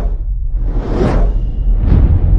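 Channel logo sting: a whoosh swelling to a peak about a second in and a second whoosh near the end, over a deep, steady bass rumble that cuts in abruptly with a hit.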